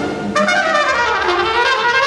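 Trumpet, with tenor saxophone, playing a jazz horn line that slides down in pitch and climbs back up, over a break where the drums and bass drop out.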